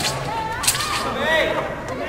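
A single sharp snap about two-thirds of a second in, made during a women's wushu broadsword (dao) routine, with voices chattering around it.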